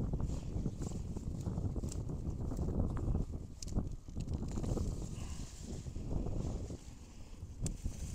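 Rustling and crackling of leafy daikon radish tops and soil as a hand reaches in among the plants and pulls a radish from the ground, over a low rumble.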